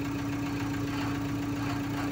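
Vehicle engine idling, heard from inside the cab: an even low rumble with a constant droning hum.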